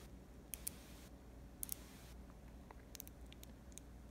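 Faint, sharp clicks of small neodymium magnet balls (Buckyballs) snapping together as a strand is wrapped around the shape. There are about half a dozen clicks, some in quick pairs, over a low hum.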